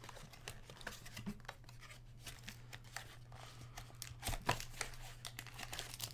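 Cardboard trading-card box being torn open and its foil-wrapped pack slid out: a run of small tears, scrapes and crinkles, busier about four seconds in.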